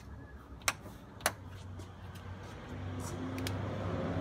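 Two sharp clicks about half a second apart, then two fainter ones: a switch inside a GEM electric car being flipped to turn on its green underglow lights. A low steady hum grows a little louder in the second half.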